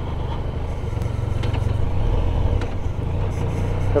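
Motorcycle engine running at road speed with steady wind and road noise, heard from a helmet-mounted camera, growing slightly louder about a second in.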